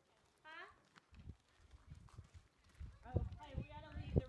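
Faint human voices: a short rising call about half a second in, then louder talk from about three seconds on, with low knocks underneath.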